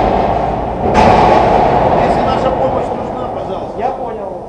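Two heavy booming thuds about a second and a half apart, each ringing on in a long echo that slowly dies away through the cavernous reactor hall.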